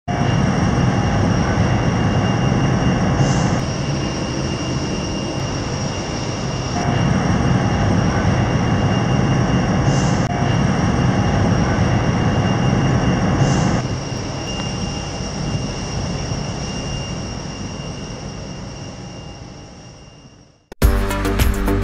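Airport aircraft noise: a steady rushing roar with a high, steady whine, dropping in level a few times and fading out near the end.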